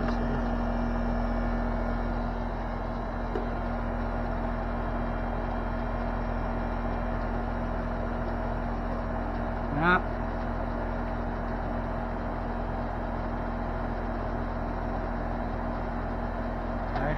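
Outdoor air-conditioning condenser unit running with a steady hum.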